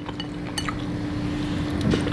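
Fingers and a wooden spoon clinking lightly against a glass bowl while meat is pulled from a lamb shank in its sauce. The clinks come about half a second in and again near the end, over a faint steady hum.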